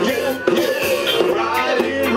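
Live ska band playing through a PA, with drum kit beat and sustained brass and band notes.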